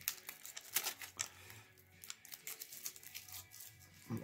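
Clear protective plastic film crinkling and crackling as it is peeled off a guitar pickup's cover, in quick irregular crackles that are densest in the first second or so.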